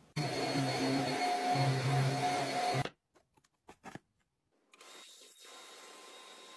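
Electric drive motor of a Tronxi smart bedside table's motorized drawer, running steadily for about three seconds and then stopping abruptly. A couple of light clicks follow, then a faint steady hum near the end.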